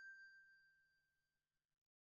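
The faint, fading tail of a single bell-like ding, a chime sound effect for the animated like button. It dies away over the first second or so.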